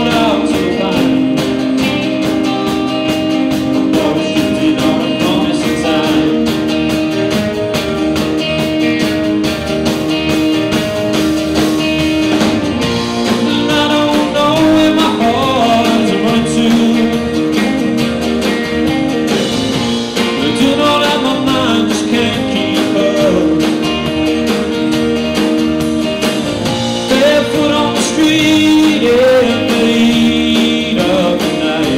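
Live band playing a song: acoustic guitar, electric guitar, bass guitar and drums together, with a man singing at times.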